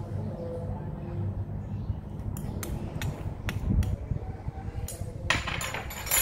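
A metal spoon clinking and tapping against a small bowl as seasoning powder is knocked into a wooden mortar, a series of sharp clicks in the second half.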